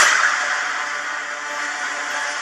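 Film trailer sound effects: a sudden whooshing hit, followed by a steady noisy sound that slowly fades away.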